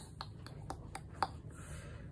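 A few light clicks and taps from hands handling a paint swipe tool at the edge of a wet acrylic canvas, about five in all, the sharpest a little past a second in.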